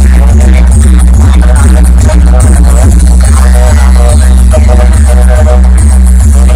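Electronic dance music blasting at very high volume from a DJ 'box' sound system, with a heavy, steady deep bass drone throughout.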